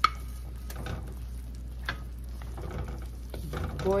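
Glass bowl clinking against an aluminium wok, one sharp clink with a short ring at the start and a couple of lighter knocks later, as a wooden spatula pushes fried mackerel into the pan. Under it, coconut milk simmers at a boil.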